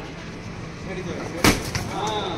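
An ash gourd dashed down hard onto a tiled floor and smashing: one sharp, loud splat about one and a half seconds in.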